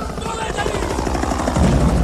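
Helicopter rotor beating steadily close by, growing louder near the end.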